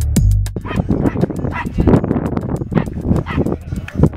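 Small dogs barking repeatedly in short, irregular barks. The electronic music track with heavy bass cuts out just after the start and comes back at the very end.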